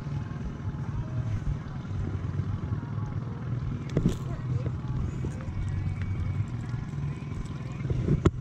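Boat outboard motor running steadily at low trolling speed, a low even hum, with a brief sharp clatter about four seconds in.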